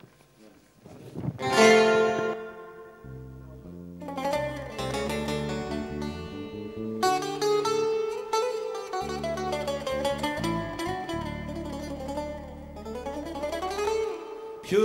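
A small Greek band plays an instrumental passage led by bouzouki. A loud ringing chord sounds about a second and a half in, then a bass line enters around three seconds and quick plucked bouzouki notes carry the tune from about four seconds on.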